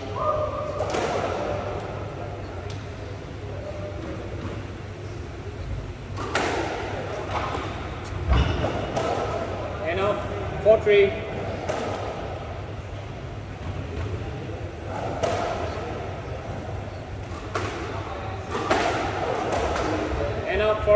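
Squash ball strikes and bounces echoing around an indoor court at irregular intervals, several sharp thuds a few seconds apart, with voices talking in the background.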